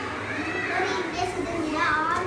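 A young girl speaking aloud, her voice climbing in pitch near the end.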